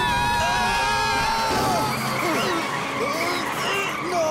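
A cartoon car's tyres screeching in a long, high, wavering squeal as it brakes hard for a child on the crossing. The squeal fades about two seconds in, and a noisy rush with music follows.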